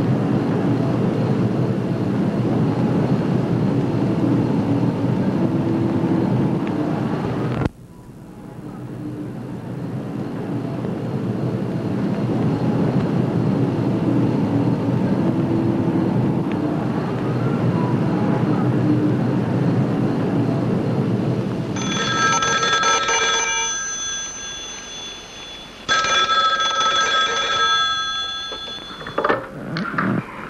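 Steady outdoor city traffic noise, which drops out suddenly about eight seconds in and fades back up. Near the end a 1970s office desk telephone's bell rings twice, each ring about three seconds long.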